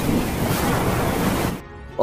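Storm wind with heavy rain: a loud, steady rushing noise that drops away abruptly near the end.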